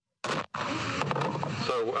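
Dead silence, then the live video-conference audio feed cuts in abruptly about a quarter second in, dropping out for an instant before carrying a steady hiss. A voice starts speaking ('Uh') near the end.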